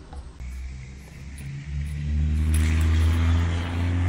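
A motor vehicle engine running nearby: a steady low hum that grows louder about a second and a half in and then holds, with a rushing hiss joining it a second later.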